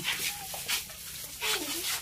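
Faint, scattered voices of young children in the background, with short wavering vocal sounds and no close speech.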